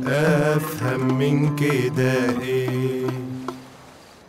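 A man singing a long, wavering Arabic vocal line to his own oud, with a few plucked notes; the singing dies away shortly before the end.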